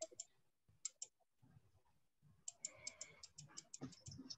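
Near silence, with faint clicks from computer use: a few scattered clicks at first, then a quick run of about ten faint clicks in the last second and a half.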